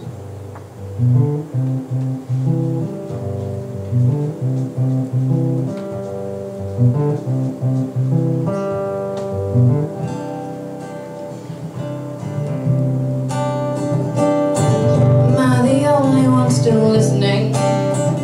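Acoustic guitar playing an instrumental passage: single picked notes stepping through a melody, then louder strummed chords from about two-thirds of the way in.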